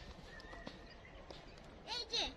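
Faint outdoor hush with a few soft, scattered footsteps on a dirt path, and a brief thin high tone about half a second in.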